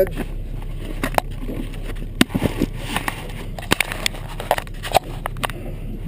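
Scattered knocks, clicks and rustles of a camera being handled and repositioned, over a steady low hum from a Suzuki DF300 V6 four-stroke outboard idling.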